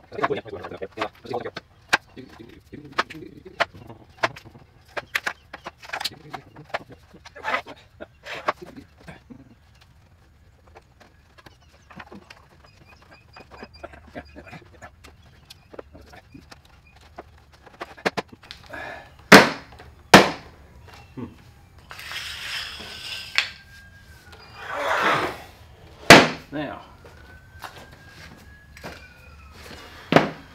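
Plastic electrical conduit pipes knocking and clicking against a wooden rack and against each other as they are fitted into it. Several sharper, louder knocks come in the second half, along with two brief scraping, rushing noises.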